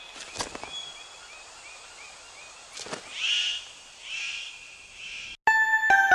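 Rainforest ambience: a steady run of short chirps, about three a second, with two louder bird calls about three and four seconds in and a couple of sharp clicks. Near the end the forest sound cuts off and a bright chiming jingle on mallet-like tones begins.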